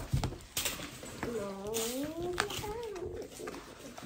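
Plastic and card blister packaging of a Pokémon card pack being handled, with a few sharp clicks and crinkles. A short wavering vocal sound comes about a second and a half in.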